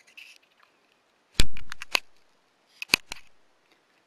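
A sharp knock with a dull thump, followed at once by a quick run of about four clicks, then a second short cluster of clicks about a second later.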